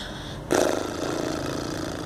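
An engine that becomes suddenly loud about half a second in and runs on steadily with a rough buzz.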